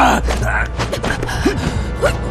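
A man gasping and groaning in pain over dramatic background music, with several sharp hit sound effects.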